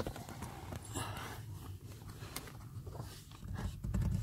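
A sharp knock right at the start, then faint irregular bumping and rubbing as a handheld phone is manoeuvred into a car footwell beside the pedals.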